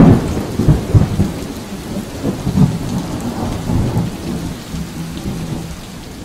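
Thunder-and-rain sound effect: low rolling thunder rumbling over a steady hiss of rain, gradually dying away.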